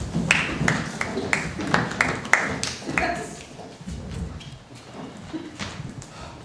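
Footsteps on a stage floor, a steady run of sharp steps about three a second for the first three seconds, then fading.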